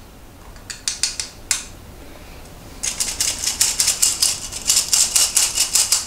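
Hand-operated stainless-steel flour sifter clicking as its handle is worked, sifting powder onto a plate. A few clicks about a second in, then a rapid run of several clicks a second from about halfway through.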